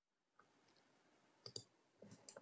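Near silence with a faint hiss, broken by two short faint clicks close together about one and a half seconds in.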